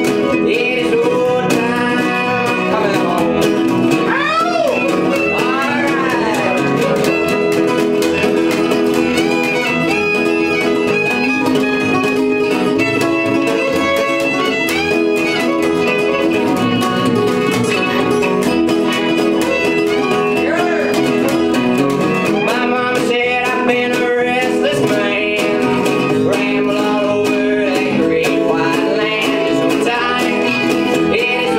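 Live acoustic string band playing a country-bluegrass tune: fiddle over a strummed acoustic guitar and plucked upright bass.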